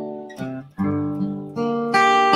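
Steel-string acoustic guitar played alone: chords struck about four times, each ringing and fading before the next, with a short lull just before the middle.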